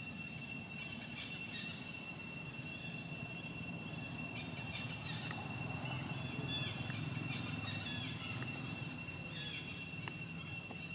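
Outdoor ambience dominated by a steady, high-pitched insect drone held on two even tones, with faint, scattered short chirps over it and a low background hum.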